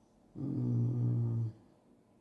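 A low, steady hummed "mm" from a person's voice, lasting about a second and holding one pitch.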